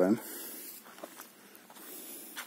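Faint footsteps on a dirt path: a few soft steps about a second in, over a light hiss.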